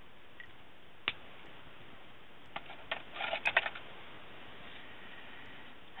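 Faint handling sounds of a marker and paper pieces over a low steady hiss: one sharp click about a second in, then a short run of clicks and scratchy rustles about three seconds in.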